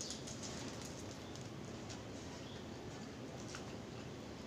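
Faint eating sounds: scattered soft clicks and crackles as fried milkfish is picked apart by hand and chewed.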